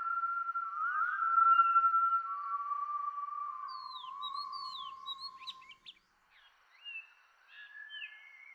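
Opening soundtrack of long held, whistle-like tones that slide up into pitch and hold, with a few quick bird-like chirps about four seconds in. It dies away about six seconds in.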